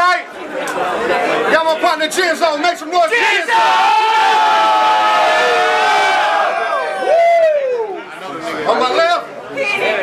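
A crowd of people shouting and hollering together, loud. About three and a half seconds in, many voices join in a long group yell lasting some three seconds, ending with one voice falling in pitch.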